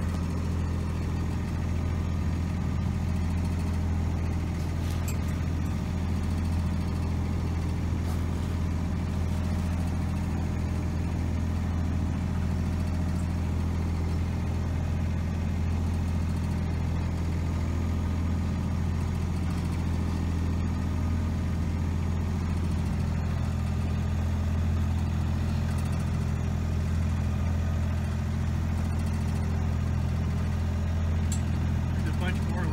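A boat's engine running steadily: a low, even hum that holds the same pitch and level throughout.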